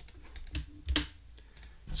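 A few scattered computer keyboard keystrokes, the clearest about a second in.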